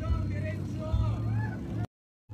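Low steady drone of a small racing boat's engine under faint background voices; the sound cuts off abruptly near the end.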